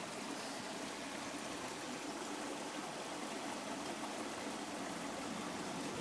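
Steady rush of a fast-flowing river.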